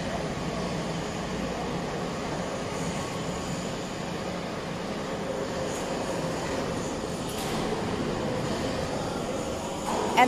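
Square-pipe roll forming line running: the gearbox-driven forming stations give a steady mechanical hum and rumble that keeps an even level.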